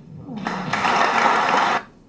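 Applause from a chamber full of seated members, building from about half a second in and cutting off sharply near the end.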